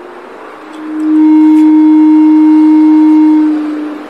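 Microphone feedback through the PA: a loud, steady low tone that swells in about a second in, holds for about two and a half seconds, and fades out near the end.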